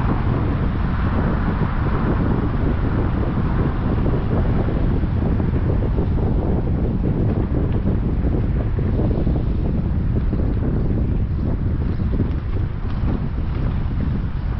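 Wind buffeting the microphone over a steady low rumble from a car with its window open.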